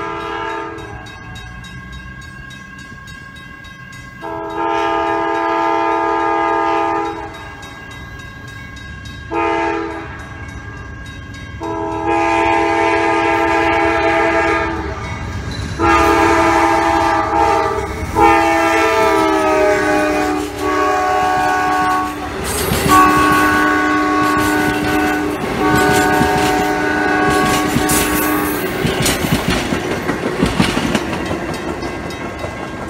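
Amtrak GE P42DC diesel locomotive sounding its multi-chime air horn for grade crossings: long blasts with one short among them, the grade-crossing signal of long, long, short, long. The last long blast drops in pitch as the locomotive passes, and two more long blasts follow at the lower pitch. Near the end the passenger cars clatter over the rail joints.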